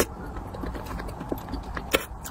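Close-miked, wet chewing and mouth clicks of someone eating a soft, saucy dish. One sharp click comes just before the end.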